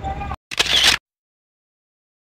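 Faint street background that cuts off about a third of a second in, then a short half-second burst of hissy noise, then dead silence.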